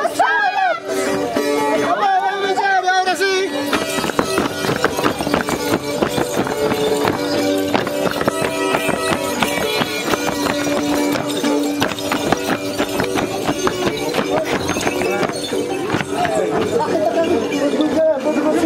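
A group of festival dancers stamping and clattering their feet rapidly on a dirt street, over voices singing and music with a steady held tone. The voices stand out in the first few seconds; the dense stamping takes over after that.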